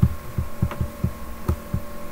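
A quick, uneven run of soft low thumps, about eight in two seconds, from a computer mouse as its wheel scrolls a document. A steady electrical hum runs beneath.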